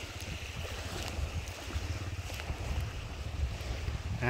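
Wind buffeting the phone's microphone outdoors: an uneven low rumble with a steady breezy hiss and a few faint clicks.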